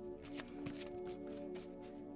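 Tarot cards being shuffled and flicked through by hand: a run of short papery flicks, about eight of them, over soft steady background music.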